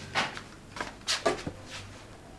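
A handful of soft, quick shuffling steps and clothing rustles, five or six short scuffs over two seconds, as a person in slippers moves up to a door.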